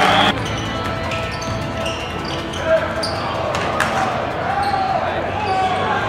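Basketball game on a hardwood gym floor: crowd murmur with short sneaker squeaks and a basketball bouncing, with two sharp knocks near the middle. Loud crowd noise cuts off suddenly just after the start.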